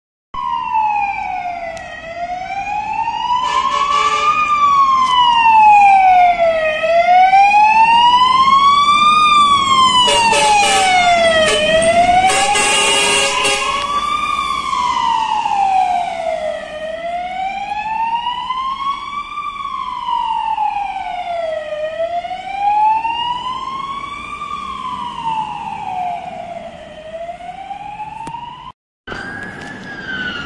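Polish fire engine siren wailing in a slow rise and fall, about five seconds per cycle, loud and close. Blasts of the truck's horns cut in about four seconds in and again twice between roughly ten and fourteen seconds. A brief dropout comes near the end.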